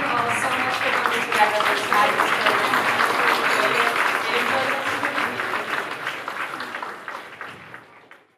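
Audience applauding in a large hall, dying away over the last two seconds.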